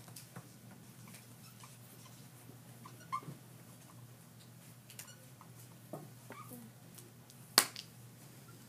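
Dry-erase markers clicking and tapping against a wooden desk as children write, scattered small taps over a low steady hum, with one sharp click near the end.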